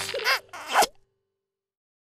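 A quick zip-like sound with rising and falling pitch sweeps as the cap is pulled off a Sharpie marker, cutting off suddenly about a second in.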